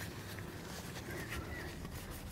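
Faint outdoor ambience with light rustling and scraping as gloved hands pick up potatoes from dry soil.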